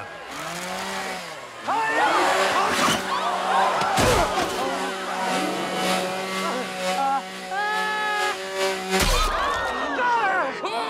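Petrol chainsaw running steadily, revving up sharply near the start and again near the end, with two heavy thumps about four and nine seconds in.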